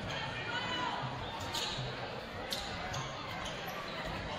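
A basketball bouncing on a hardwood gym floor, with a few sharp strokes, against the hum of voices in a large gymnasium.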